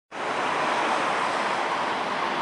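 Steady, even rushing noise with no distinct events.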